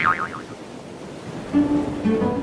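The tail of a sanderling chick's quick, wavering peep, then a quiet wash of water, and about one and a half seconds in a low string note of the film score begins.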